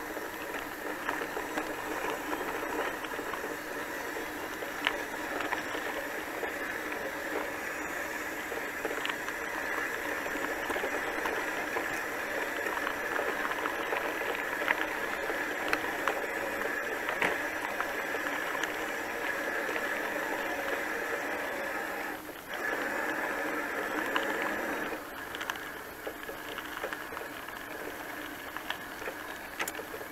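Bicycle rolling along a gravel forest path: steady tyre and drivetrain noise with occasional sharp rattles over bumps. It briefly drops out about 22 seconds in and is a little quieter for the last few seconds.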